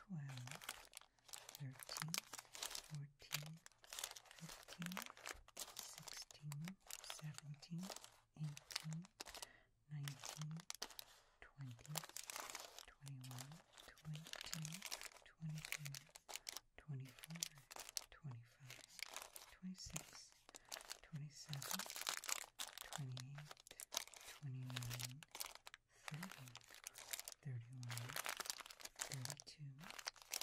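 Crinkly wrappers of Reese's Peanut Butter Cup miniatures rustling and crackling as they are picked up one at a time and set down on another pile. A soft voice says short words at a steady pace, in time with the candies being counted.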